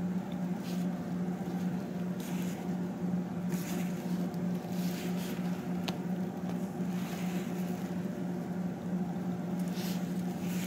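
A steady low electrical hum, with a few soft rustles and one small click about six seconds in, as gloved hands handle a Turkel chest tube set.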